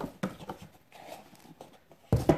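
Cardboard and paper packaging being handled: a few short knocks and taps in the first half second, then faint rustling and small clicks.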